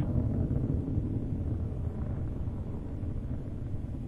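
Steady low rumble of Space Shuttle Discovery's rocket engines and solid rocket boosters in ascent.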